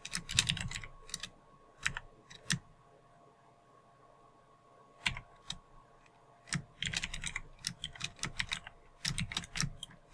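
Typing on a computer keyboard in quick bursts of keystrokes, with a pause of about two seconds near the middle.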